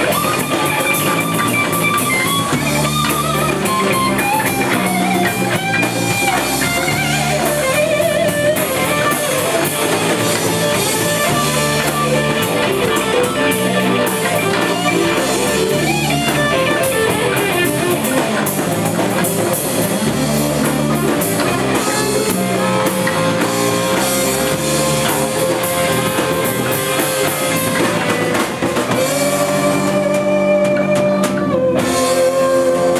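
Live blues-rock band playing an instrumental passage: electric guitar, bass, drum kit and congas, with harmonica played into a cupped hand-held microphone. Held melody notes run over a steady beat.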